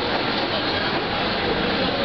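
A San Francisco cable car running on its rails, heard as a steady, even noise.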